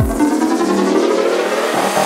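Psytrance break: the kick drum and bass drop out for about two seconds while a synth sweep glides in pitch. The kick and bass come back right at the end.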